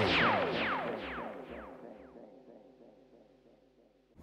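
Electronic intro music winding down: a held chord with a run of falling swoops that fade out, leaving near silence for the last second.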